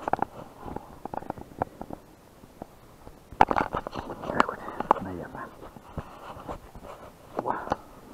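Rubbing, scraping and clicking handling noise on a small action camera's microphone as it is fitted onto a head mount, with a busier burst of knocks and rubbing about three and a half seconds in.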